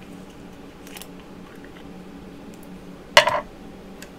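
A short clatter about three seconds in as the plastic lid of a varnish jar is opened and set down on a hard table top, over a low steady hum.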